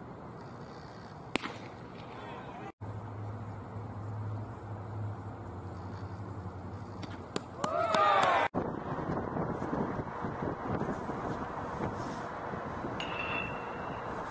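Baseball game sounds: a single sharp pop about a second and a half in as a pitch hits the catcher's mitt, then a cluster of sharp cracks with shouting voices around eight seconds in, the loudest moment, over steady ballpark background noise.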